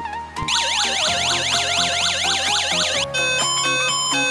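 An electronic siren tone sweeping rapidly up and down, about five sweeps a second, starting about half a second in and cutting off after about two and a half seconds, over background music.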